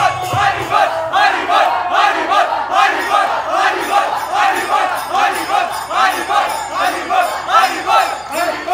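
Group of men chanting a devotional kirtan loudly in unison, in short rhythmic phrases about twice a second, over a steady percussion beat.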